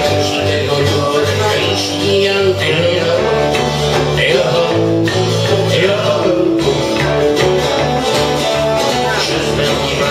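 Small acoustic band playing live: guitars over an electric bass guitar line that moves note by note, a traditional folk tune.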